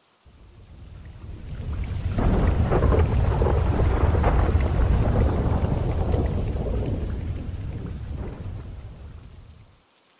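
Rolling thunder over a rain-like hiss, a long deep rumble that swells in over the first two seconds and slowly fades away toward the end.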